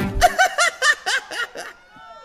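A person laughing in a quick run of high chuckles, about five a second, fading out within two seconds. The last acoustic guitar chord of the song dies away at the start.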